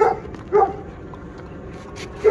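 Two short dog barks, one right at the start and one about half a second later.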